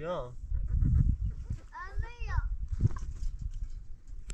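Goat bleating: two quavering bleats, a short one at the start and a longer one about two seconds in.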